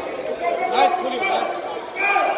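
Background chatter of many voices talking and calling out in a large sports hall, with no clear words.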